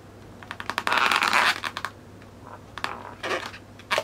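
Felt-tip marker rubbing on an inflated latex balloon as a black area is coloured in. It makes a dense scratchy rubbing for about a second and a half, then a couple of short strokes near the end.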